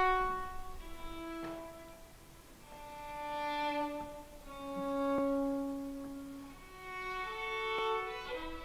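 Solo violin playing slow, long-held bowed notes that swell and fade. The notes step downward in pitch over the first six seconds, then climb again near the end.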